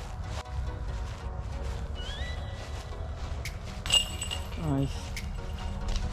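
Footsteps on grass with a steady low wind rumble on a body-worn camera microphone. A short rising whistle-like tone comes about two seconds in. A sharp metallic clink with a brief ring comes about four seconds in, then a short vocal sound.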